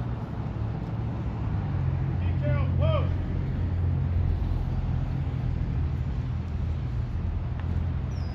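Steady low engine drone, with a few short rising-and-falling calls about two and a half seconds in.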